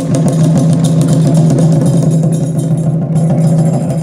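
Live kagura ensemble music: a steady low held tone with faint quick percussive clicks above it, and no big drum strokes in this stretch.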